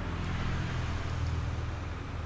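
A low, steady rumble of background noise, with a few faint clicks from a computer mouse as the map's Set button is pressed.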